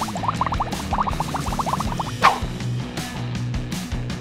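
Upbeat background music with a quick run of bubbling sound effects in the first two seconds, then a short whoosh a little past halfway.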